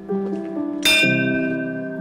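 A hanging temple bell struck once, about a second in, then ringing on and slowly fading, over background music.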